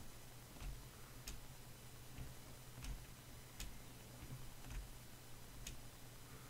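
Faint, sharp clicks of a computer pointing device at uneven intervals, about half a dozen, as it is used to draw, over a low steady hum.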